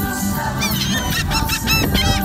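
Gulls calling in a quick series of short, high, arching cries beginning about half a second in, over background music.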